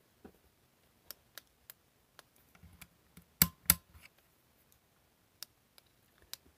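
Small, sharp plastic clicks and taps from handling multimeter test probes and a plastic electrosurgery pen, scattered through, with two louder clicks about a third of a second apart roughly halfway through.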